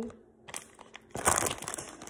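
A plastic bag of grapes crinkling as it is picked up and moved. The crackle starts about half a second in and is loudest in one burst midway.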